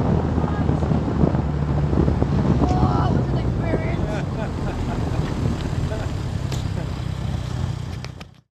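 Open-wheeled car's engine running at low revs as the car slows down a runway, with wind noise on the microphone; the sound fades out at the end.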